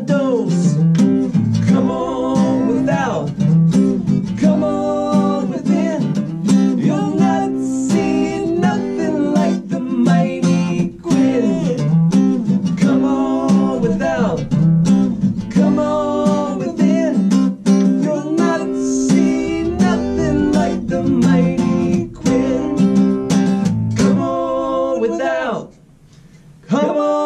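Acoustic duo song: two acoustic guitars strummed and picked under a male singing voice, ending just before the close.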